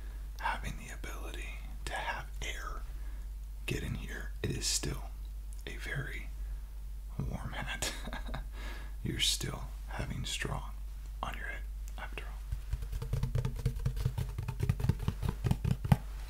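Soft close-microphone whispering, too quiet for the words to be made out, for most of the time. From about thirteen seconds in, fingers tap rapidly on a woven straw boater hat, about ten light taps a second.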